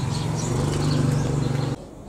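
A steady low mechanical hum that rises slightly in pitch about half a second in and cuts off suddenly near the end.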